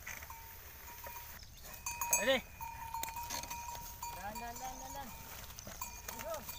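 Farm animals calling in an open field: a short, loud, quavering call about two seconds in, then a longer, lower call that rises and falls near the middle.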